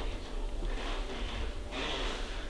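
Quiet room noise with a steady low hum, and a short breath near the end.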